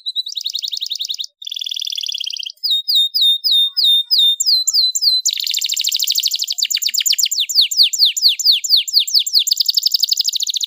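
Domestic canary singing an unbroken song of rapid trills. It opens with fast trills, moves to a row of about seven clear downward-slurred notes, and from about halfway runs into a long, very rapid trill of falling sweeps.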